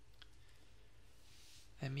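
Quiet pause with a steady low hum and a faint click early on, then a soft-spoken voice starts again near the end.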